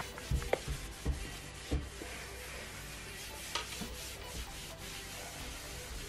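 A cleaning wipe rubbing back and forth along a shelf board, faint and steady, with a few light knocks in the first two seconds.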